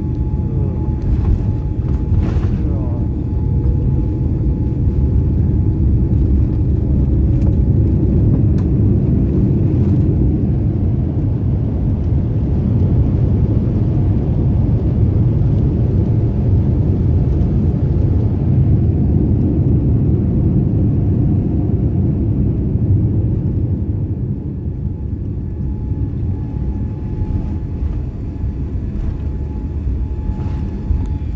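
Airliner cabin noise during the landing rollout: a loud low rumble of engines and wheels on the runway that builds through the middle, with the wing spoilers raised, then eases off over the last few seconds as the plane slows. A faint steady whine runs underneath.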